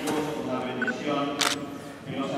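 A camera shutter clicks sharply once about one and a half seconds in, with a fainter click at the very start, over a man's low speaking voice.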